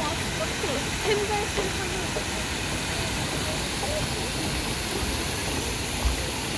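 A steady rushing hiss of outdoor background noise, with faint voices of people talking over the first two seconds or so.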